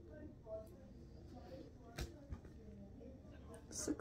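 Faint, distant talking, with two sharp clicks about two seconds in.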